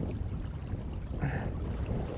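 Wind buffeting the microphone as a steady low rumble, over the wash of a shallow river's current.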